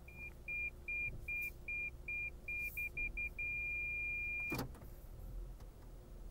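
Lexus parking-assist (clearance sonar) warning beeping: a single high tone repeating a little under three times a second, quickening about three seconds in, then turning into one continuous tone for about a second before it stops. The quickening beeps and the steady tone signal an obstacle getting ever closer to the bumper sensors.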